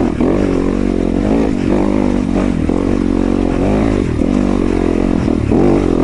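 Yamaha YZ250FX dirt bike's single-cylinder four-stroke engine running under a varying throttle, its pitch rising and falling as it climbs a rocky trail.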